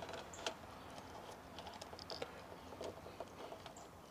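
Faint, scattered small clicks and rustling of fingers handling insulated wires and crimped spade connectors while a wire is pulled off a terminal and another is fitted.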